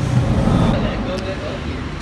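Low, steady rumble of road traffic and vehicle engines, with faint voices in the background.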